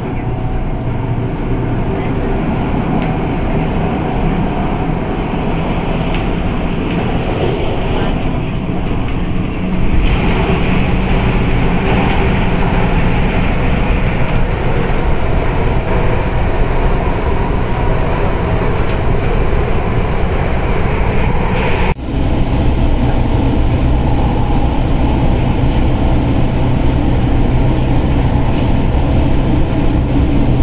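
MTR Tung Chung line train running at speed, heard from inside the passenger car: a steady rumble of wheels and traction motors that grows louder about a third of the way through.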